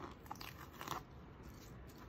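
Faint crinkling and crackling of paper transfer-tape masking being peeled off a painted board and crumpled by hand, a few short crackles in the first second.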